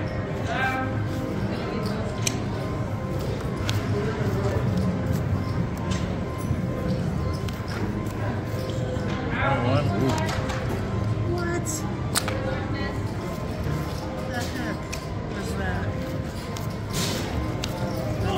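Casino floor ambience: steady background music and chatter from other people. A few sharp clicks come through as cards are dealt and gathered at the blackjack table.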